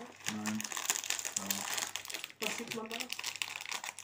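A shiny snack wrapper crinkling and crackling as it is pulled and twisted open by hand, in irregular crackles.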